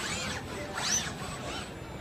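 Industrial robot arm's servo motors whining as the arm moves: two rising-then-falling whines, one at the start and one about a second in.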